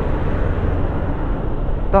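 Steady rush of wind on the rider's microphone mixed with the running of a Honda motorcycle and its tyres on the road while riding at speed.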